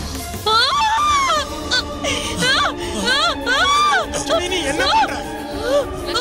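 A woman wailing loudly in anguish: a string of high, rising-and-falling cries, over a steady background music score.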